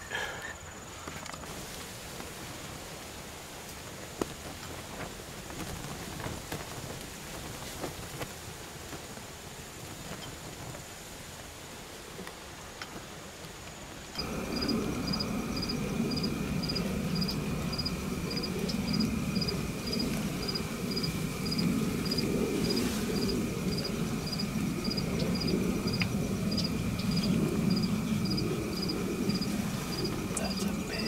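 Field insects calling outdoors: a steady high trill with a separate high chirp repeating about twice a second, over a low, gusting wind rumble. The sound jumps abruptly louder about fourteen seconds in; before that there is only quiet outdoor ambience with a faint high insect tone.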